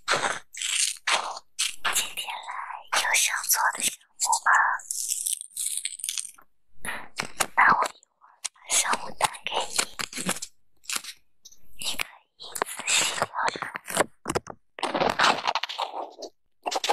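Small scissors snipping through a glossy sticker sheet, then the cut-out sticker crinkling and crackling as fingers handle it and press it flat, in a string of irregular crisp crackles.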